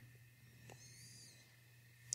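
Near silence: room tone with a low steady hum. A faint click comes about two-thirds of a second in, followed by a brief faint high chirp.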